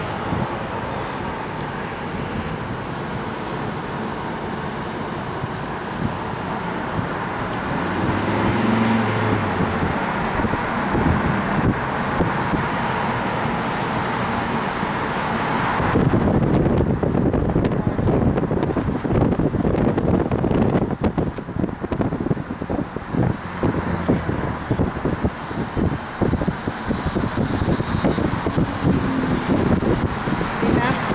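Steady road and tyre noise of a moving car with wind rushing past. About halfway through, the wind starts buffeting the microphone in rapid, uneven gusts.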